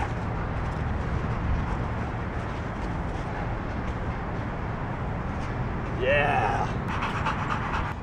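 A pit bull–rottweiler mix dog panting hard, worn out from chasing a ball in the heat, over a steady rushing noise; a short pitched whine-like sound comes about six seconds in.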